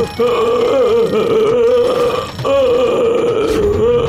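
A cartoon character's long, drawn-out yell, held in two long wavering cries with a brief break for breath about two seconds in.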